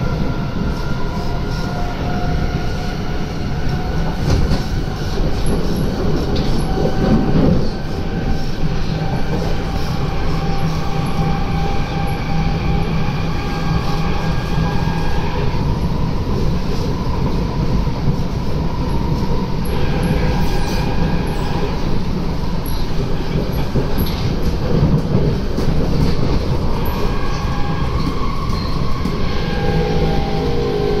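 Inside a Kawasaki–Nippon Sharyo C751B metro train running between stations: a steady rumble of wheels and running gear, with faint whining tones that slowly rise and fall in pitch.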